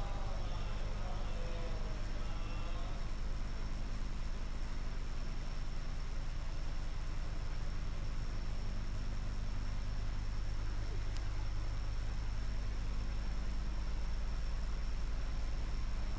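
Steady electrical hum with hiss from the microphone and sound system, left open between speakers, with a thin high whine over it. Faint voices in the first few seconds.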